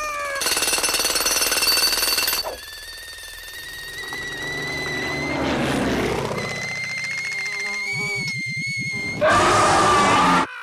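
Cartoon sound effects: a loud rapid rattle for about two seconds as a cartoon cat's fur bristles in fright, then a long steady whistling tone, and a loud scream near the end.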